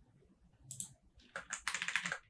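Computer keyboard keystrokes: a short clack a little under a second in, then a quick run of keystrokes in the second half.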